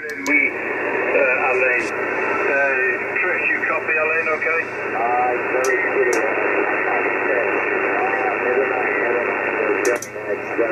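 Single-sideband voice of an amateur radio operator on the 80-metre band, received on an Icom transceiver tuned to 3.789 MHz lower sideband and played through its speaker. The talk is thin and cut off in the treble, over a steady hiss of band noise.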